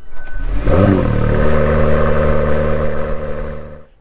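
A car engine revving up: its pitch climbs for about a second, then holds at a steady high rev and fades out just before the end.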